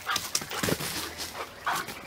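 A dog close by making a few short, soft sounds as she starts to play.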